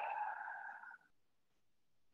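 A woman's long, breathy exhale through the mouth, part of a deep core-breathing exercise. It fades out about a second in, and then it is silent.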